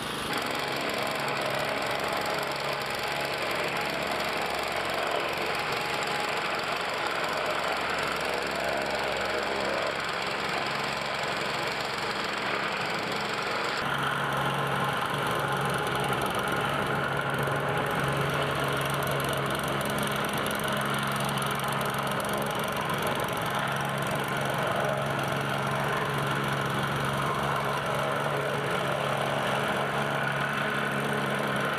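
Petrol-engined vibratory plate compactor running steadily as it is pushed over newly laid concrete interlocking pavers. About halfway through the sound changes abruptly, and a steady low engine hum is stronger after that.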